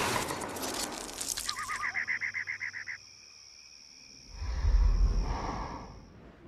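Horror-trailer sound design: a noisy wash fades, then a rapid pulsing chirp cuts off sharply about three seconds in. After a moment of near silence, a low rumbling swell rises near the end.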